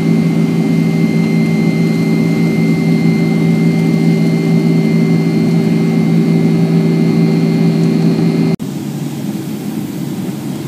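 Cabin noise of a Boeing 767-300ER in cruise from a window seat by the wing: a loud, steady jet engine drone carrying several steady tones. About eight and a half seconds in it cuts abruptly to a quieter, lower steady engine and airflow sound as the airliner flies low on approach.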